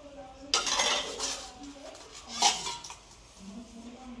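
Steel dishes being washed by hand: about a second of scrubbing and rattling about half a second in, then one sharp metallic clank of a steel utensil about two and a half seconds in, the loudest sound.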